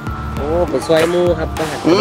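A man speaking briefly in Thai over background music with a low, steady bass.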